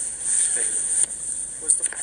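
Steady high-pitched hiss from a phone's microphone, with a few clicks as a hand covers the phone, and faint muffled voices.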